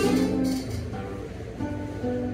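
A small acoustic plucked string instrument, ukulele-like, playing sustained strummed chords, with a new chord struck about a second and a half in.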